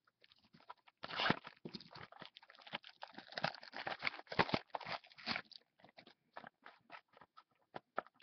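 Foil wrapper of a trading card pack crinkling and crackling as it is torn open and the cards are pulled out, in an irregular run of crackles that thins to a few light ticks in the last few seconds.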